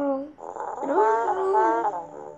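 A young child's voice making wordless, drawn-out vocal sounds whose pitch slides up and down, with a break about half a second in.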